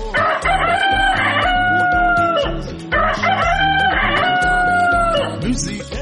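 A rooster crowing twice, each crow a long call of about two and a half seconds, over a music track with a steady beat.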